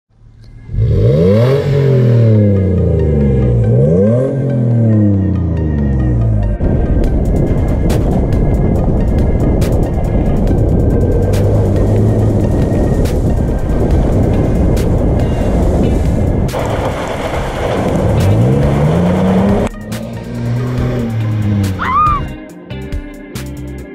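2016 Toyota 4Runner's 4.0-litre V6 through a Gibson performance exhaust, revved up and back down twice in the first few seconds. It then runs hard under throttle on a muddy track, with a heavy rush of tyre and spray noise and many sharp ticks of gravel and mud striking the body. The engine revs up once more near the end.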